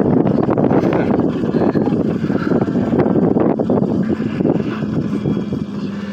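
Wind rushing and buffeting inside a moving aerial tramway cabin as it travels along its cable. A steady low hum comes in about four seconds in.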